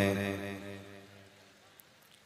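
A man's drawn-out chanted vocal over a microphone: one long held note that fades out about a second and a half in.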